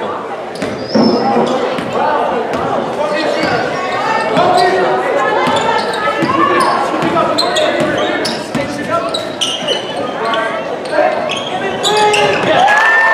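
A basketball bouncing repeatedly on a hardwood gym floor, with indistinct chatter from spectators and players echoing through a large gym.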